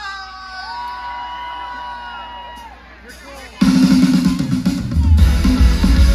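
A live rock band through a large PA: a long held note fades over the first few seconds, then the full band crashes in loud about three and a half seconds in, with drum kit, bass and electric guitars.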